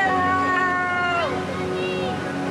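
A long held voice-like note that slides down in pitch about a second in, over the murmur of passing guests.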